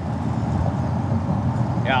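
Steady low rumble of an open-top vehicle on the move: engine and road noise heard from inside the open cabin. A man says "yeah" near the end.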